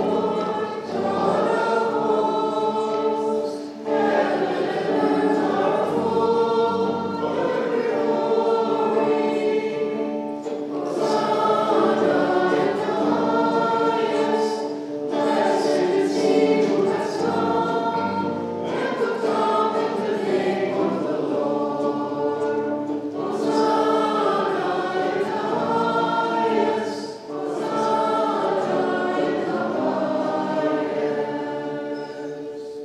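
Church choir singing a liturgical hymn in held, slow-moving phrases over sustained low notes, with short breaks between phrases.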